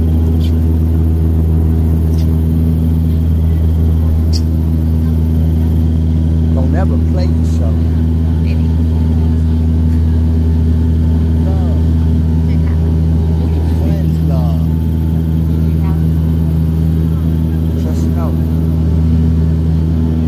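Cabin drone of a twin-turboprop airliner climbing after takeoff: a steady, loud propeller and engine hum with several even tones layered over a low rumble, holding constant throughout.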